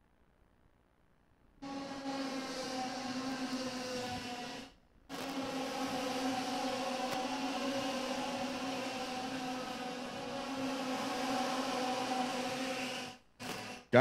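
IAME X30 125cc single-cylinder two-stroke kart engines running at high revs, a steady drone. The sound cuts in about a second and a half in, drops out briefly near five seconds, and cuts off again shortly before the end.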